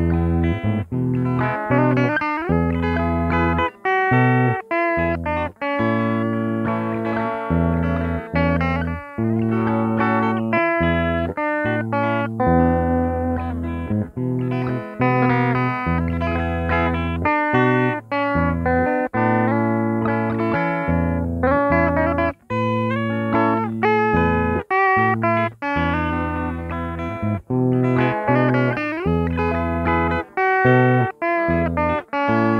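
Electric guitar playing a single-note lead melody, with held notes and a few pitch bends.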